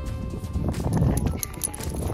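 Footsteps walking on wet sand and mud, a run of soft irregular impacts over a low rumble of handling and wind noise, with faint music underneath.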